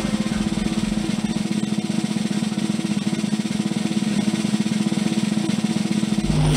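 Fast, steady snare drum roll over a low sustained drone: a broadcast suspense sound effect for the bonus reveal.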